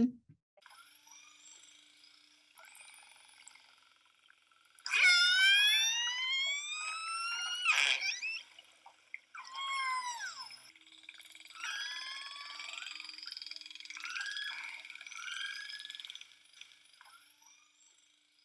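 Orca calls: a few seconds of near quiet, then a long call sweeping upward in pitch about five seconds in, a falling call near ten seconds, and a run of shorter calls after it.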